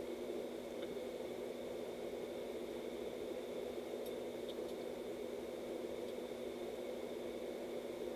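Steady room tone: a low, even hiss with a faint electrical hum, and no other sound.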